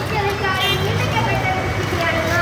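Voices of people in the procession calling and talking, over a steady low vehicle engine hum.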